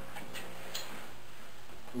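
Quiet, steady room noise with a few faint ticks.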